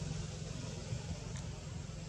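Steady low rumble under an even hiss, with a faint click about one and a half seconds in.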